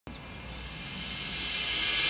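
Steady background hiss of a cartoon outdoor sound bed, rising in level, with two faint high chirps in the first second.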